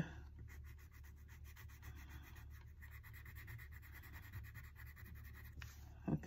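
A wax crayon scribbling on a paper chart, faint, in rapid short back-and-forth strokes as a square is coloured in.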